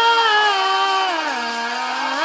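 A girl's singing voice holding one long sustained note that slides down about an octave a little past halfway, then starts back up near the end.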